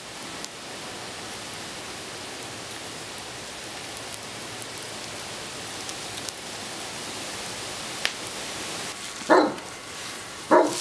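Steady rushing hiss of a charcoal forge fire under forced air from a hair dryer, with a few sharp crackles from the coals. Near the end a dog barks once.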